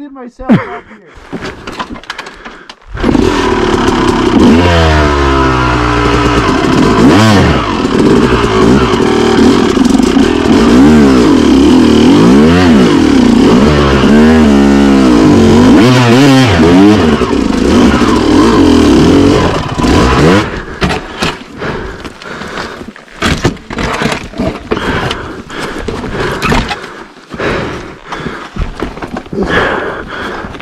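Yamaha YZ250 two-stroke dirt bike engine revving hard, its pitch sweeping up and down again and again as the throttle is worked over rocks, for about 17 seconds from three seconds in. Then the engine drops away, leaving a run of knocks and clatters.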